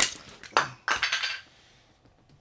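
A sharp clack followed by a few clattering knocks of small hard pieces, a cedar cartridge box and its clear plastic insert knocked about in the hands. The sounds die away about a second and a half in.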